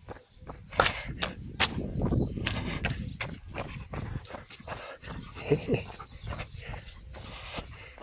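Footsteps of shoes on an asphalt road at a walking pace, about two to three steps a second, with a brief voice sound about five and a half seconds in.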